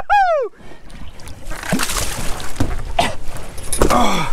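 Water splashing and several knocks as a gaffed yellowfin tuna is hauled out of the sea onto a boat's deck.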